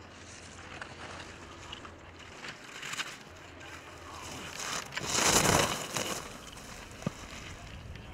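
Ski edges carving and scraping on hard-packed snow as a giant slalom racer turns through the gates, in several hissing swells, the loudest about five to six seconds in. A single sharp click a second later.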